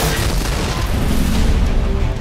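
Trailer music with a heavy boom hit at the start, followed by a loud, dense rumbling wash of noise for about two seconds.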